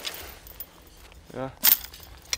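Light outdoor hiss, then a single sharp metallic click near the end as thin metal poles are knocked together in gloved hands.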